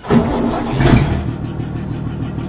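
Boat engine starting up with a sudden loud burst, then settling into a steady low idle after about a second.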